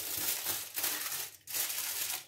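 Aluminium foil crinkling and crumpling as it is folded and pressed shut around a baking dish, in two stretches with a short break between.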